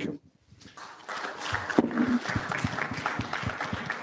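Audience applauding, the clapping building up about a second in and then holding steady.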